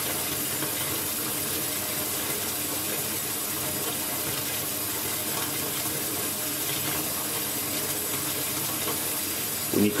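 Tap water running steadily into a bathtub, filling it.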